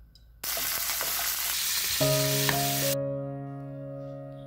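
Food sizzling in hot oil in a frying pan, a dense hiss that starts abruptly about half a second in and cuts off suddenly about three seconds in. Piano music comes in about two seconds in and carries on.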